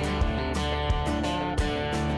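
Background music led by guitar, with a steady beat about every 0.7 seconds.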